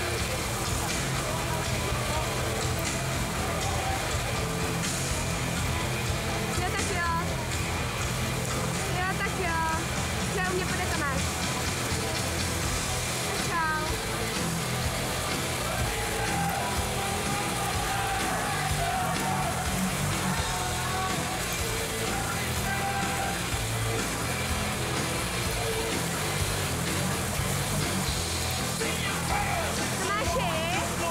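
Steady, echoing noise of an indoor swimming hall during a race: crowd voices and shouts with music playing, and water splashing from the swimmers.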